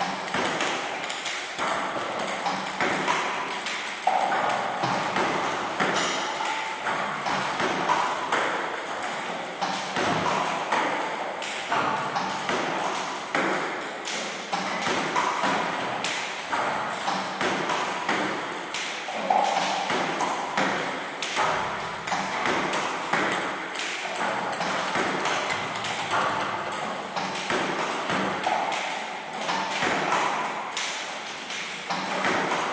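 Table tennis ball being hit with a paddle and bouncing on the table: a quick run of light, sharp clicks that keeps going.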